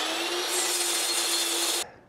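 Miter saw cutting aluminum bar stock: a steady motor whine with a dense, high-pitched cutting noise that grows louder and brighter about half a second in as the blade works through the metal, then stops abruptly near the end.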